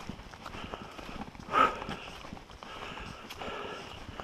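Footsteps of a hiker walking on a dirt forest trail: a run of crunches and scuffs, with one brief louder sound about one and a half seconds in.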